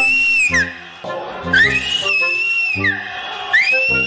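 Shrill finger whistles, blown with fingers in the mouth, in three long blasts. Each rises into a steady high note and falls away at its close: the first ends about half a second in, the second runs from about a second and a half to nearly three seconds, and the third starts near the end. Music plays underneath.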